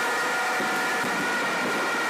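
Steady background noise: an even hiss with a few faint, steady high tones, holding at one level throughout.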